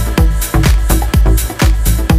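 Electronic dance track: a steady four-on-the-floor kick drum at about two beats a second under sustained synth chords, with no vocals.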